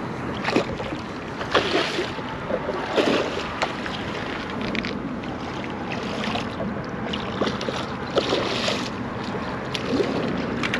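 A large hooked drum thrashing at the water's surface beside a boat: irregular splashes, several of them close together, over a steady wash of water and wind noise.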